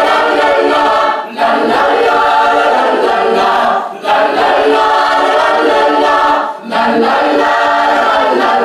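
Mixed choir of men and women singing together in sustained phrases, broken by brief breaths about a second in, near the middle and again near the end.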